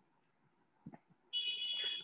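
A steady high-pitched tone starts about a second and a half in and lasts under a second, after near silence.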